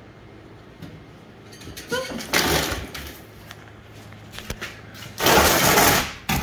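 A fox scrabbling through a wire crate into a plastic pet carrier as it is herded with a catch pole, wire and plastic rattling and scraping in two loud rushes, about two seconds in and again near the end. A short rising squeal comes just before the first rush.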